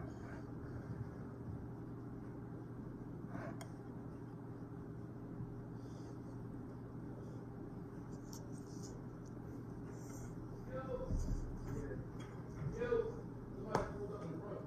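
Steady low indoor hum with a single sharp click a few seconds in, and faint distant voices near the end.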